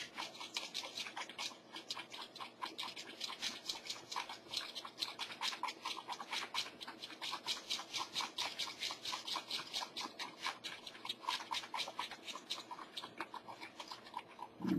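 A wooden stir stick scraping around the inside of a cup, mixing epoxy resin and hardener in rapid, even strokes, several a second.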